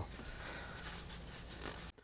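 Faint room tone with soft handling noise as oily hands are wiped on a shop towel. The sound cuts out abruptly near the end.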